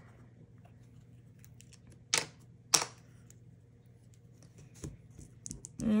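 Two sharp clacks of hard plastic about two-thirds of a second apart, from rubber-stamping tools being handled: a clear acrylic stamp block and an ink pad. Faint light ticks come before and after them.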